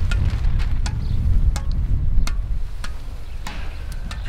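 Squash ball tapping on the strings of a squash racket held face-up in repeated bounces, about two sharp taps a second. A low rumble of wind on the microphone runs under it and is the loudest sound.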